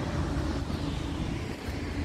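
Steady outdoor background noise: a low rumble of wind on the microphone with a faint distant engine hum.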